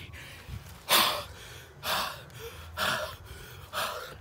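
A person breathing audibly close to the microphone: four short, breathy huffs about a second apart.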